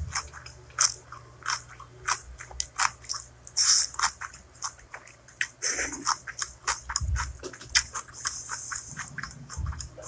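Close-miked chewing and biting of spicy noodles and kimchi cabbage: wet mouth smacks and crunchy clicks coming several times a second.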